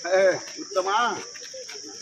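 Two short spoken or called-out utterances in a crowd, about a second apart, over a steady high-pitched buzz.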